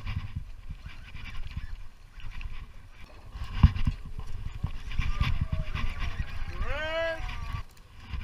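Low rumble and buffeting on a chest-mounted camera's microphone, with a sharp knock about three and a half seconds in. Near the end comes one short rising call with a clear pitch, under a second long.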